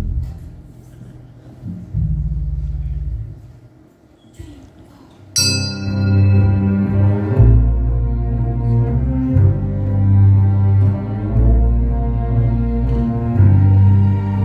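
Instrumental opening of a song played live by a small band with a string section. A low held bass note sounds briefly and stops; then about five seconds in the whole ensemble comes in at once on a sharp struck attack, and cello, strings and bass hold deep, sustained low notes.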